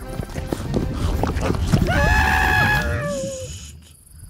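Animated-film trailer soundtrack: music under a quick run of knocking sound effects, then a held, pitched cartoon cry that slides down and fades away near the end.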